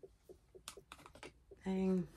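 A run of light, quick clicks and taps of small makeup items being handled and put away, with a brief hum of voice near the end.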